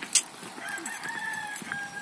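A rooster crowing faintly, one long, drawn-out call that starts about half a second in and runs to the end.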